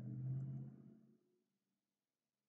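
Mostly near silence: a faint, steady low hum of a man's voice, like a held "mmm", fades out within the first second.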